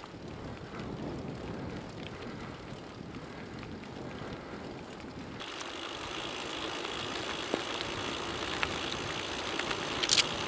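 Riding noise from a touring bicycle on a wet road: wind rushing over the camera microphone and tyres hissing on the wet asphalt. About halfway through the sound changes abruptly from a low rumble to a brighter hiss, with a few small clicks.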